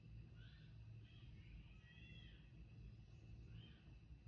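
Near silence: a low steady room hum with a few faint, short high chirps scattered through it.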